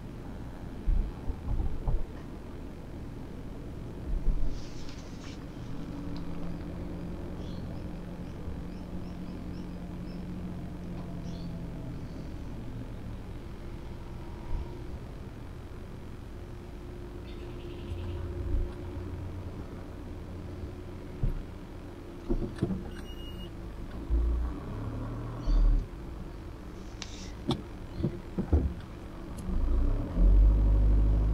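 Car heard from inside the cabin, its engine running at low speed while it makes a three-point turn, with an engine note that holds steady for several seconds in the first half. Short low thumps come and go over the hum, more of them in the second half.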